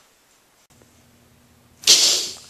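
A short gap of silence, then faint room tone with a low steady hum; near the end a sudden loud hiss-like burst of noise.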